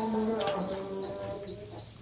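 Chickens calling: a long, slowly falling low call that fades out near the end, with short high chirps repeating over it.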